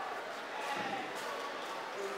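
Indistinct voices talking in a large hall, with a dull thump a little under a second in.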